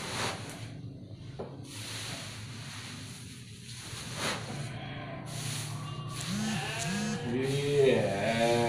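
Cut grass rustling as it is handled and pushed into a sack, then sheep bleating from about six seconds in: two short calls, then a louder, longer bleat near the end.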